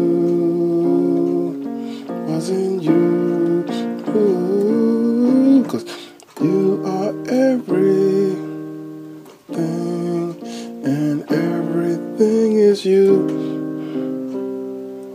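Yamaha electronic keyboard playing sustained chords, C minor, B-flat minor and B-flat, then E-flat, B-flat and C minor, changing every second or two.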